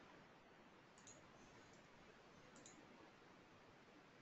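Near silence, with two faint computer-mouse clicks, about a second in and again near three seconds in.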